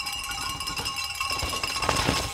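Cowbells shaken by trackside spectators, ringing continuously with rapid strikes. A sharp clattering knock comes near the end.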